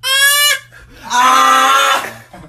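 A baby yelling loudly: a short, high-pitched shriek, then about half a second later a longer, lower-pitched yell.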